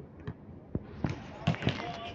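A basketball bouncing on a court, a few irregular thuds in the second half, with people's voices talking in the background.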